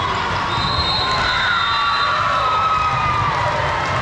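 Steady crowd din of a volleyball hall with several matches in play: players and spectators cheering and shouting, with some long held calls and ball strikes, echoing in the large hall.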